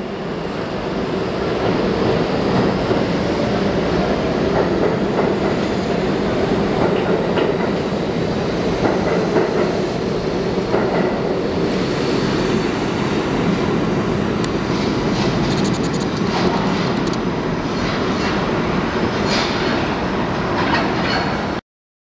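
An R32 subway train pulling out of the station and running past, a steady loud rumble of motors and wheels on the rails. The sound gains more hiss and higher sound about halfway through as the cars go by, then cuts off suddenly near the end.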